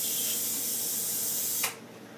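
Handheld high-voltage device hissing steadily as its discharge tip ionizes the air. The hiss is switched off with a click near the end and stops abruptly.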